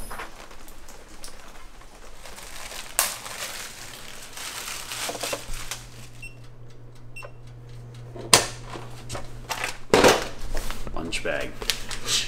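MEAT! vacuum sealer running: its pump hums steadily for several seconds as it draws the air from a plastic bag. Sharp clicks from the machine's lid and buttons come as the hum starts, and twice more about eight and ten seconds in.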